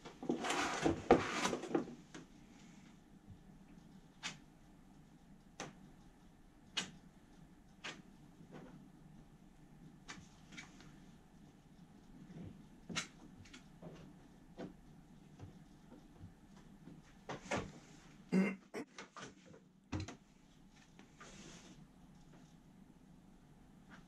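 Plastic spreader scraping Bondo body filler: a loud scrape of about a second and a half near the start, then scattered light clicks and taps as the filler is worked onto a 3D-printed hull plug, with a louder cluster of scrapes a few seconds before the end and a single knock near the end.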